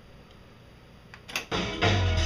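Akai GX-77 reel-to-reel tape deck starting playback: faint tape hiss, two short mechanical clicks about a second in as the transport engages, then recorded music with drums comes in loudly about one and a half seconds in.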